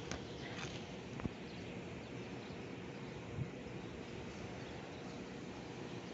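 Steady outdoor background noise, with a few faint clicks.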